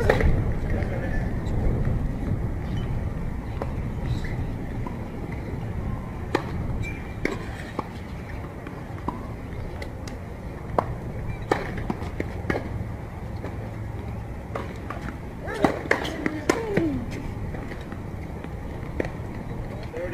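Tennis balls struck and bouncing on a hard court: sharp single knocks every few seconds, with a quick cluster of them about three-quarters of the way through, over a steady low outdoor rumble and faint voices.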